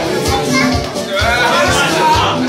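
Lively chatter and calling out from many voices over loud dance music with a steady bass beat.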